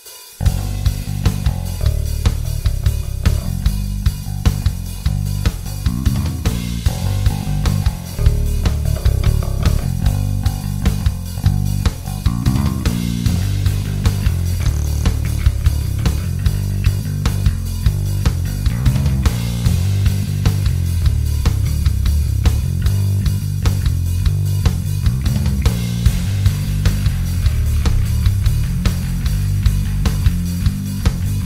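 Electric bass guitar playing a riff with a dirty, overdriven tone from Line 6 Helix drive and amp models, over a drum backing track with a steady beat. The bass goes through the Helix's BDI21 model on its dirty setting, and later through its Obsidian 7000 model. The music starts abruptly just after the opening.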